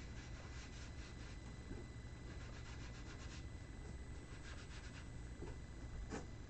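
Ink sponge rubbed and dabbed along the edges of a cardstock card, faint and scratchy, in three short runs of quick strokes, laying black ink onto the edges and corners.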